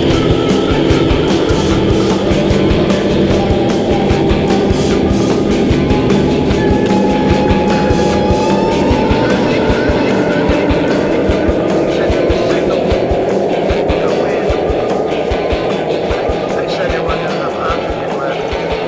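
Instrumental stoner/fuzz rock: dense distorted guitar and drums, with a droning tone that slowly rises in pitch through the second half as the whole mix eases down slightly in loudness.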